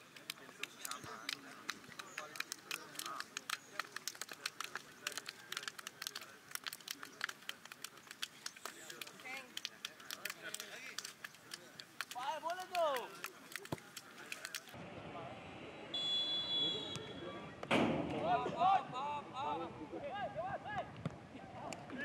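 Many sharp hand slaps and claps in quick succession as football players high-five and shake hands down the line, with a few voices. Then the sound changes to the open pitch: a short, steady, high whistle and players shouting to each other.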